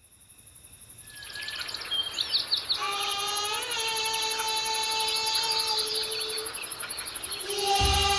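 Forest ambience on a promotional film's soundtrack: insects chirring in a fast, even pulse, with a few bird chirps about two seconds in. A long held musical note enters about three seconds in, and music swells near the end.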